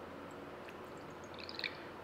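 Brewed coffee poured from a glass server into a small tasting glass: a faint trickle of liquid, slightly louder near the end.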